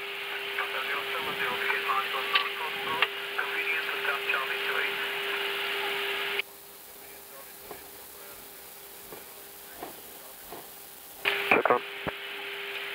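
Crackly radio transmission on the cockpit audio: garbled voice under hiss and static that cuts off abruptly about six seconds in, leaving a quieter steady cockpit hum.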